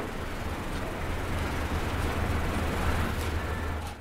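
Steady low rumble with a hiss over it, swelling slightly through the middle and dropping away near the end.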